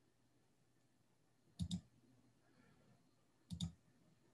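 Near silence broken by two quick pairs of sharp computer mouse clicks, the first about a second and a half in and the second about three and a half seconds in.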